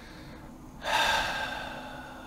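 A person's long, audible breath through the mouth, starting about a second in and fading away.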